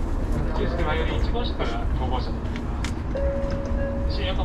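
Indistinct voices over the steady low rumble of a Shinkansen car standing at a station platform, with a steady hum tone coming in about three seconds in.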